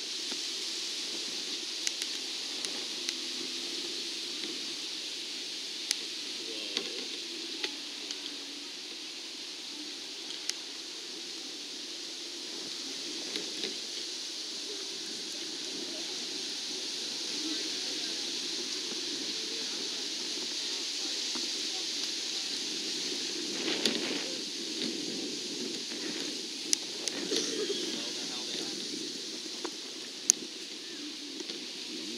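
Outdoor ambience: a steady hiss under a faint, indistinct murmur of distant voices, with a few scattered sharp clicks.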